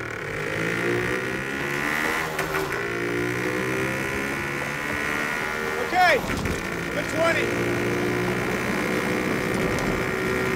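Car engine pulling steadily under acceleration, its pitch rising over the first couple of seconds and then holding. Two short vocal exclamations break in about six and seven seconds in.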